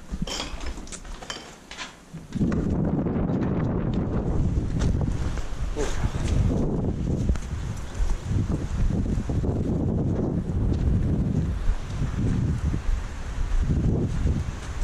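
A few footsteps crunching on concrete rubble, then from about two seconds in, wind buffeting the microphone with a loud, steady low rumble.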